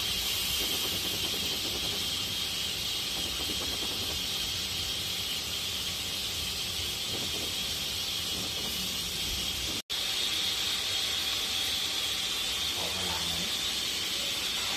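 Minced pork frying in hot oil in a wok, a steady sizzle with the scrape of a metal spatula, briefly cut off about ten seconds in.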